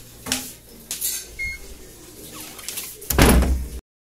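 Wooden door with a metal lever handle being opened: a few light clicks from the handle and latch, then a louder noise lasting under a second near the end that cuts off abruptly.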